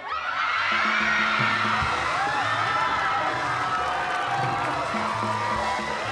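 Studio audience cheering and whooping over band music with a pulsing bass line, breaking out suddenly and going on loudly throughout.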